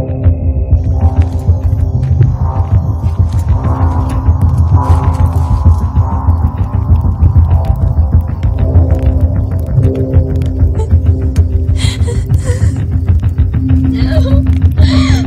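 Action-film soundtrack: loud score with a heavy, throbbing low pulse and held tones, over a scatter of sharp hits and cracks. A brief noisy burst comes near the end.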